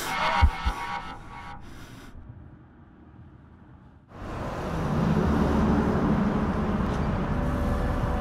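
Music and low thumps fade away over the first two seconds. About four seconds in, a steady vehicle rumble starts from a pickup truck towing a trailer on the road.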